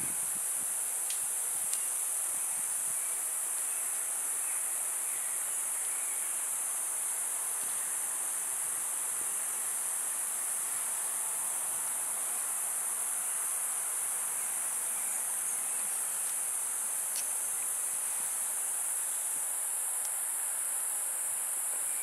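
Steady, high-pitched chorus of insects, unbroken and even throughout, with a few faint ticks.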